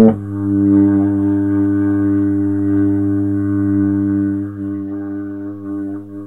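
A euphonium holding one long, low note. The note softens after about four and a half seconds and wavers near the end.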